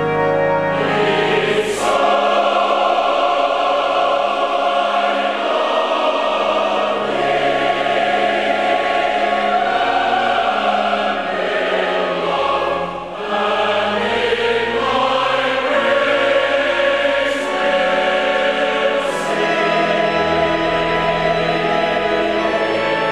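Large church choir singing sustained chords with organ accompaniment. The organ is heard alone at first, and the voices come in about two seconds in. There is a short breath pause about halfway through.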